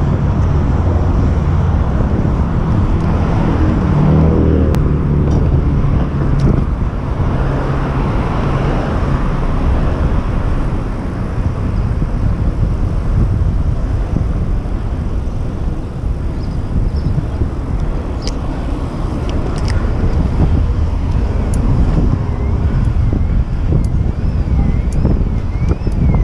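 Wind rushing over the microphone of a camera on a moving bicycle, with city traffic going by.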